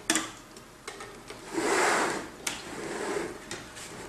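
Handling noise from a 1/16 scale model tank: small clicks at the hatch, then the model scraping as it is slid and turned on a wooden tabletop, with one sharp click about two and a half seconds in.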